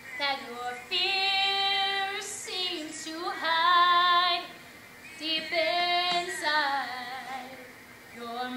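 A young woman singing alone without accompaniment, holding long notes in several phrases with short breaks between them.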